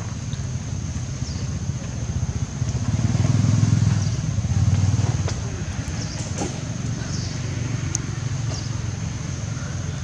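A motor vehicle engine running, its low rumble swelling louder for a few seconds in the middle as it passes and then easing back, over a steady thin high-pitched tone.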